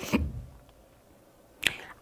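A pause in speech with quiet room tone: a soft low thump at the start, then a single short sharp click about one and a half seconds in, just before the voice resumes.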